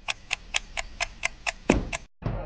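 Even ticking like a clock, about four ticks a second, with one louder stroke near the end.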